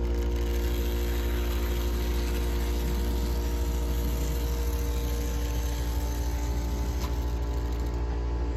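HO-scale model steam locomotive's small electric motor and gearing whirring steadily as it runs along the track, over a low hum. A faint click about seven seconds in.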